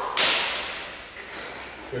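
One sharp crack of steel longsword training blades striking, about a fifth of a second in, dying away over about a second with the echo of a large hall.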